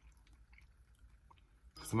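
Faint, sparse crisp clicks and crunches of dried banana chips, with a man's voice starting near the end.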